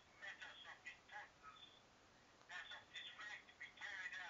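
Faint, tinny voice of the other party on a mobile phone call, leaking from the handset's earpiece, speaking in short phrases with a pause in the middle.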